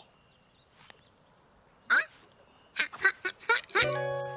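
Cartoon flamingo honks: after a near-silent pause, one short honk about two seconds in, then a quick run of short honks near the end.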